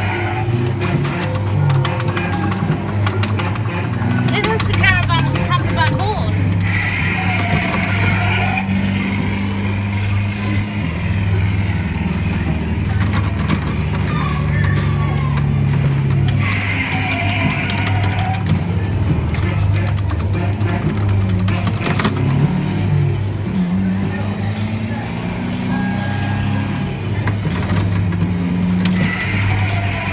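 A coin-operated Mickey Mouse car kiddie ride running, its Stamar sound board playing music and voice over a steady low engine-effect hum.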